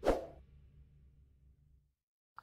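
A short swoosh transition sound effect that starts suddenly and dies away within half a second, leaving near silence.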